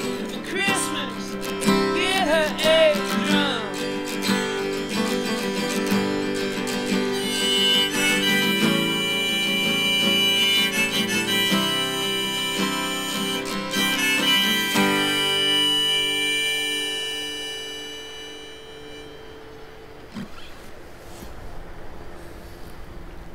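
Harmonica on a neck rack and a strummed acoustic guitar playing the closing bars of a song, with bending harmonica notes in the first few seconds. The final chord rings and fades out about 15 seconds in, leaving quiet background.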